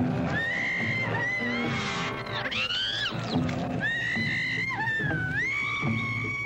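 Dramatic horror-film score: high, long wailing tones that slide up and down, over a continuous low rumble.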